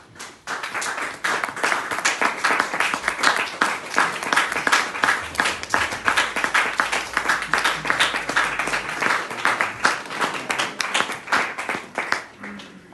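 A group applauding: dense, irregular clapping that starts abruptly and stops near the end.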